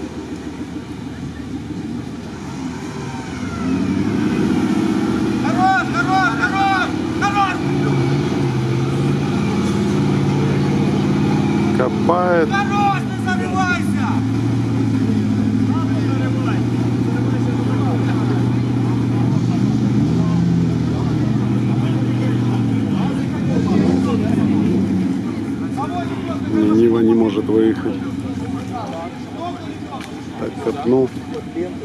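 Off-road SUV's engine running hard under load, its revs shifting up and down, as the vehicle crawls forward through deep swamp water. It grows louder a few seconds in and stays high.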